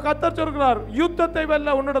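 A voice speaking through a microphone over soft sustained background chords.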